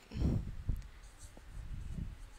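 Marker pen writing on a whiteboard: short rubbing strokes, with a couple of light ticks as the tip touches the board.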